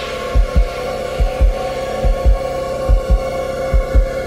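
Background music: a held, droning chord over a low double-thump pulse like a heartbeat, one pair of beats a little under every second.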